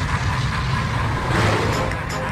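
Explosion sound effect: a deep rumbling blast that swells with a noisy rush about a second and a half in.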